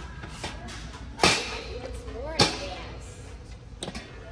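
Two sharp knocks a little over a second apart as a small portable charcoal kettle grill is handled, its metal lid and body knocking together, with faint voices in between.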